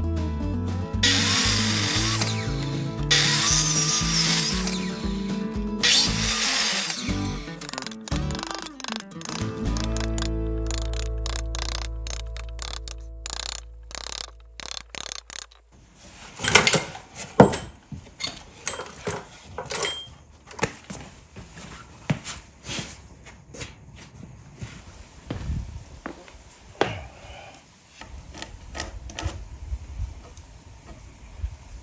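Three loud cuts of about two seconds each by a miter saw through old timber over background guitar music. In the second half the music is gone, and wooden pieces knock and clack as they are handled and fitted, with two sharp knocks standing out.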